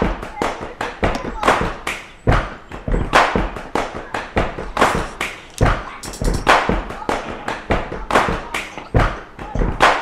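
Percussive beat opening a rap track: a steady rhythm of sharp hits, two or three a second, with no melody or bass yet.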